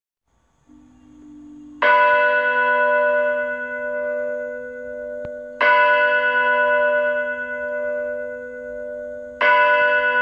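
A bell tolling three times, about four seconds apart, each stroke ringing on and slowly fading over a low steady tone that starts just before the first stroke.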